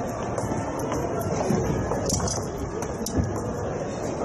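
Empty concert hall after a performance: steady room noise and hiss, with scattered light clicks and knocks and faint, indistinct voices.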